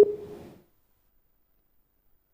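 A short, glitchy burst of sound from a breaking-up remote call line. It carries a humming tone that fades within about half a second, then the audio cuts to dead silence as the feed drops out.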